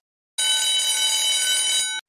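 Countdown-timer alarm sound effect: a steady bell-like ring starting about half a second in and lasting about a second and a half, signalling that the answer time has run out.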